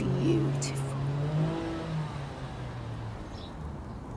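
Soft background music with held low notes that fade out over about three seconds, with a brief trace of a woman's voice in the first half-second.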